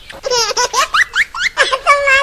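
High-pitched human laughter in a series of short peals, with a few words mixed in.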